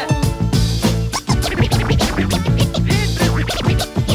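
Hip-hop DJ mix: a beat with a heavy bass line, with turntable scratches cut over it now and then.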